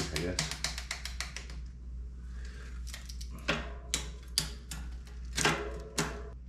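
A mountain bike's rear drivetrain clicking as the wheel is spun by hand and the gears are shifted down the cassette. A fast run of clicks comes first, then several separate sharper clicks a second or so apart.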